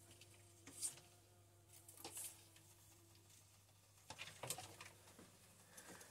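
Near silence over a low steady hum, with a few faint soft rustles and taps of hands handling plant cuttings, the longest cluster about four seconds in.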